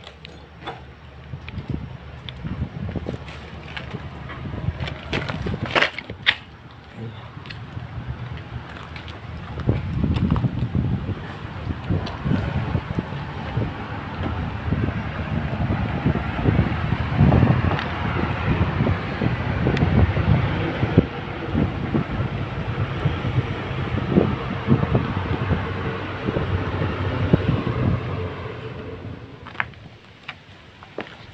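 Wind rumbling on a handheld phone's microphone, with footsteps and handling noise as someone walks over dirt and dry leaves. There are a few sharp knocks in the first seconds, and the rumble grows louder from about a third of the way in.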